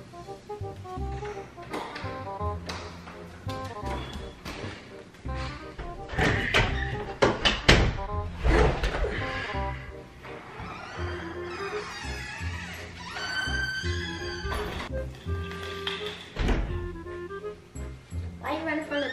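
Background music with a steady bass beat, with a cluster of loud thumps about six to eight seconds in.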